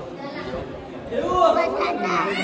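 Only speech: people talking, quieter murmur in the first second and a clearer voice speaking in the second half.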